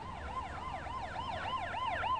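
Emergency vehicle siren in a fast yelp, its pitch sweeping up and down about four to five times a second.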